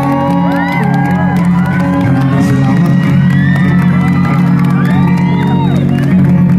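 A live band of acoustic guitar, bass guitar and electric guitar plays steady sustained chords while a crowd whoops and cheers over it, many voices calling at once.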